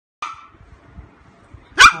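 Shih Tzu puppy barking twice: a short bark just after the start and a louder, higher yap near the end.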